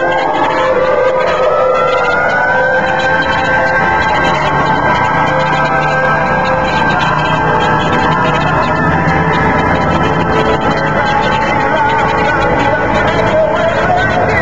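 A vehicle siren winds up in pitch over the first couple of seconds and then holds a long, steady wail, with music playing along with it.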